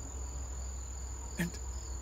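Insects trilling steadily at a high pitch in the background, one unbroken tone with a fainter, lower band beneath it.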